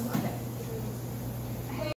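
Quiet room tone with a steady low hum. A brief, faint voice-like sound comes just after the start, and another near the end.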